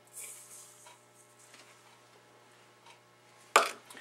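Faint handling sounds as a block of cream cheese goes into a stainless steel stand-mixer bowl, then one brief loud noise near the end.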